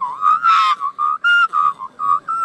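A person whistling an imitation of an Australian magpie's warbling call: a quick string of short whistled notes at much the same pitch, several sliding slightly upward.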